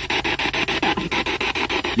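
A spirit box radio scanner sweeping rapidly through stations, played through a small external speaker: a choppy, rasping run of static and snatches of broadcast sound, about ten chops a second.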